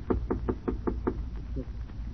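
A quick run of about seven knocks on a door in a little over a second: a radio-drama sound effect of a visitor knocking, heard through an old, narrow-band broadcast recording.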